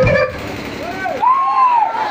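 A last drum beat as the band music breaks off, then a few pitched calls that rise and fall in arcs.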